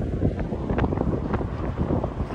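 Strong, gusty wind buffeting the microphone: a heavy low rumble with a few brief brighter gusts.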